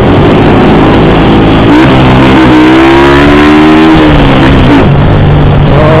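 Keeway Cafe Racer 152's single-cylinder engine under way, its pitch rising through about two seconds of acceleration around the middle and then dropping away. A heavy, even rush of wind and road noise runs under it.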